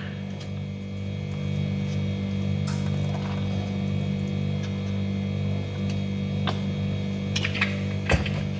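A steady low electrical hum throughout, with a few faint clicks and taps.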